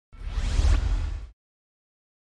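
Whoosh sound effect for a logo reveal: a rising swish over a deep low rumble, lasting just over a second.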